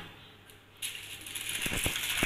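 Aluminium foil crinkling and crisp florentine biscuits crackling as they are handled and lifted off a foil-lined tray, starting about a second in, with a couple of soft knocks near the end.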